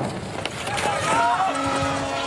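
Spectator crowd cheering and shouting as a ski sprint heat gets under way, the noise swelling about half a second in, with a steady horn note held from about a second in.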